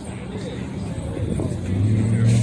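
A steady low hum, typical of a car engine idling, with faint talk from people around.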